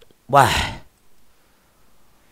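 A man's single short, breathy voice sound close to the microphone, about half a second long and falling in pitch, just after the start.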